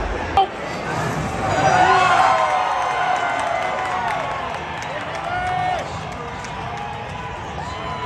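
A crowd of spectators in a large hall, many voices overlapping in shouts and cheers, loudest about two seconds in. A single sharp knock comes just under half a second in.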